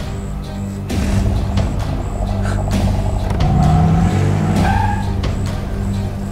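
A car engine revving, its pitch climbing from about three and a half seconds in, with several sharp knocks from the car. A film score with a low steady drone plays underneath.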